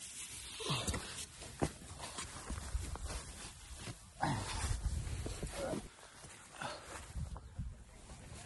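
A person climbing out of a tent: clothing and tent fabric rustling and the camera being handled close to the body, with low bumps. A few short sounds falling in pitch come through at intervals.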